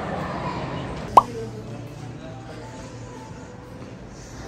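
A single short, loud rising 'plop' about a second in, like an edited pop sound effect, over background music and faint voices.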